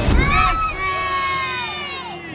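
Children shouting a long, high-pitched cheer that falls slowly in pitch, over a stadium crowd cheering.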